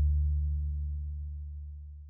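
The last low note of a Custode Marcucci double bass (c. 1891) rings on after the bow has left the string and fades away steadily.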